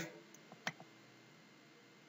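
A single sharp click of a computer mouse button about two-thirds of a second in, with a few much fainter ticks around it.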